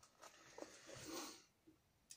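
Near silence: room tone, with a faint soft hiss for the first second and a half.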